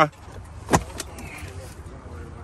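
Items being handled in a pickup truck's center console cup holder: one sharp knock about three quarters of a second in, then a lighter click, over a steady low hum.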